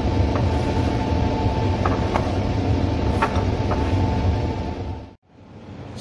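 Steady hum and rush of a laminar air-flow cabinet's blower, with a faint steady whine and a few light clicks. It drops away sharply about five seconds in.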